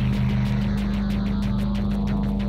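Music played from vinyl on Technics turntables through a DJ mixer during a battle routine: a held low note under a fast, even ticking beat.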